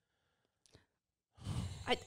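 Near silence for over a second, then a person drawing a breath, sigh-like, that leads straight into the first word of speech near the end.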